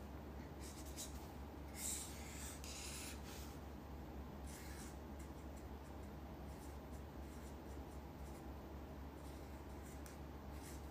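Faint soft scratching and rubbing sounds, a few brief ones in the first few seconds, over a steady low hum.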